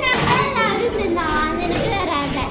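Children's voices talking and calling out, high-pitched, with other voices behind them.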